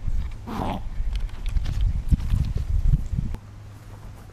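A Yorkshire terrier sniffing and snuffling hard, nose pushed into a crack right next to the microphone: a sharp sniff about half a second in, then irregular low rumbling bumps up close. It stops about three and a half seconds in.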